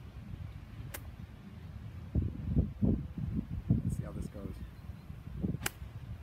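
Nine iron striking a golf ball: one sharp, short click near the end. A softer sharp click comes about a second in, and low, uneven rumbling runs in between.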